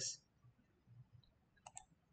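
Near silence with two quick computer-mouse clicks close together near the end.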